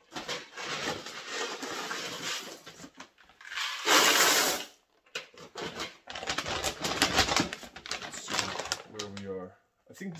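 Mylar bag crinkling and rustling as it is gathered and pushed down inside a plastic bucket, with a loud burst of crinkling about four seconds in.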